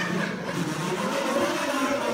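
A large ensemble of kazoos playing together, holding steady buzzing notes.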